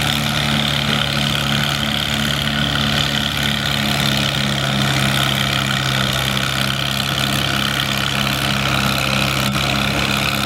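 Cockshutt 35 tractor engine pulling a weight-transfer sled, running steadily under heavy load, its pitch dropping a little about four seconds in as it lugs down.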